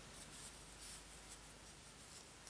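Near silence, with faint soft scratching and rubbing of worsted yarn being worked on a wooden crochet hook during a slip stitch.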